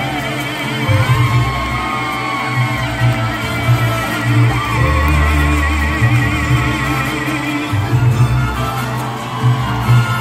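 A live mariachi band plays an instrumental passage: violins hold long notes with vibrato over a pulsing bass line.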